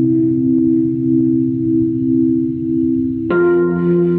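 Rhodes Mark I electric piano played through a multi-effects pedal: a chord held and ringing, then a new chord struck a little over three seconds in.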